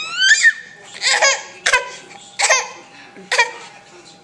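Baby laughing in about five short, high-pitched bursts, each a quick run of pulses.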